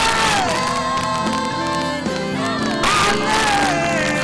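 Live gospel praise music with a congregation singing and shouting along in worship, many voices at once over sustained singing.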